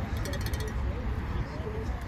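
Outdoor field ambience: a steady low rumble of wind on the microphone with faint distant voices of players and spectators. A brief rapid high ticking sounds in the first half-second.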